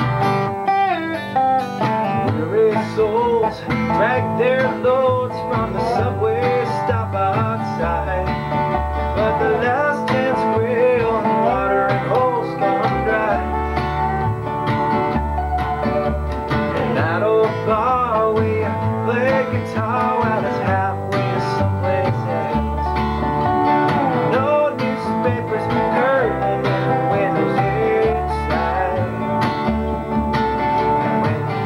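Acoustic string band playing a country-bluegrass tune: acoustic guitar, upright bass, and a dobro played lap-style with a slide, its notes gliding up and down in pitch.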